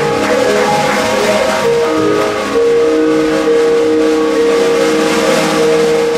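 Jazz quartet of vibraphone, drum kit, upright bass and archtop guitar playing, with long held notes over a bright wash of cymbals.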